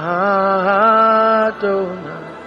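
A man's voice chanting a long sustained note that wavers slightly, then breaks off briefly and a second, shorter note follows near the end, over a soft background music pad.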